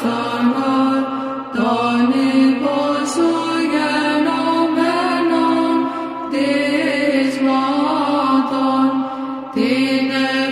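Orthodox Byzantine chant: voices sing a slow melody over a steady held drone (the ison), starting a new phrase every few seconds.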